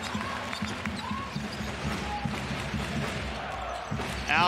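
Basketball arena ambience: steady crowd murmur with a basketball being dribbled on the hardwood court, heard as irregular low thuds.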